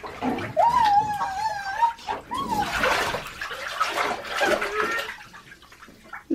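Bathwater sloshing and splashing in a tub as a child moves about in it, with a high, wavering vocal sound from the child lasting about a second near the start. The splashing dies down near the end.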